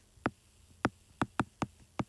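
A stylus tapping on a tablet's glass screen while handwriting an equation: about six short, sharp clicks at uneven spacing.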